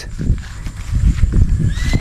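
Footsteps and rustling through tall grass and undergrowth, uneven low thumps with handling of the phone.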